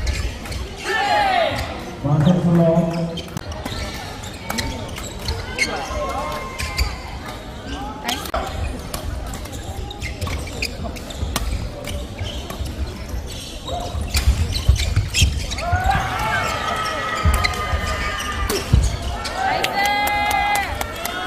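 Badminton rally in a large hall: rackets strike the shuttlecock in sharp cracks again and again, with players' feet on the court floor. Voices shout and call out twice, briefly, about a second in and again late on.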